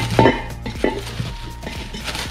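Clear plastic film crinkling as it is handled and pulled off a chrome metal hubcap in a cardboard box, with a few sharp knocks and clicks of the hubcap and box being handled.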